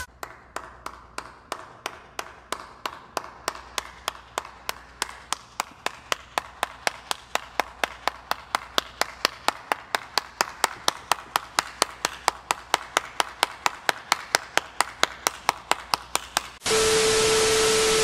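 One person clapping at a steady pace, about four claps a second, the claps growing louder. Near the end it cuts to a burst of loud TV static hiss with a steady beep tone.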